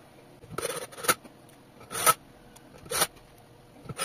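Cordless drill-driver running in short bursts, about one a second, driving screws into a washing machine clutch assembly.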